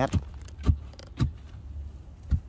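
Sharp knocks at a regular pace of about two a second, over a low steady hum: a digging tool striking the earth while a snake burrow is dug out.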